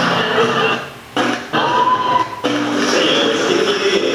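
Audio of a phone-recorded wedding reception video playing back: music as a group of men begin a harana, a Filipino serenade, with the hubbub of the reception behind it.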